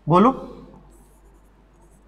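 A stylus scratching on a touchscreen board in two faint, brief runs, about a second in and near the end, as a line is drawn. A man's single spoken word comes first.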